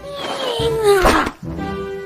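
An animated caterpillar's wordless vocal cry that slides down in pitch over about a second, over orchestral background music. The music carries on alone with held notes near the end.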